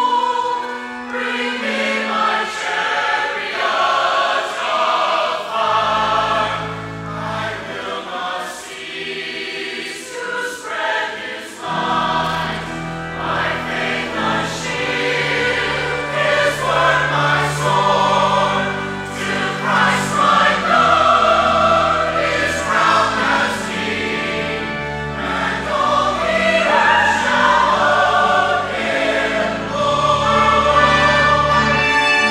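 Mixed church choir singing a sung meditation in a large reverberant sanctuary, with low sustained bass notes entering about six seconds in and holding from about twelve seconds on.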